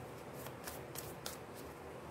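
A tarot deck being shuffled by hand: a faint, irregular run of quick soft card slaps and flicks.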